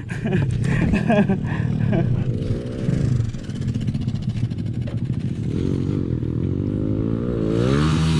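Dirt bike engine running under way on a trail, its pitch rising and falling with the throttle and climbing steadily over the last few seconds as it revs up.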